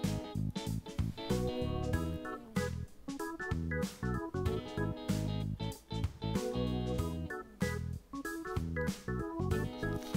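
Background instrumental music with a steady beat and keyboard-like chords.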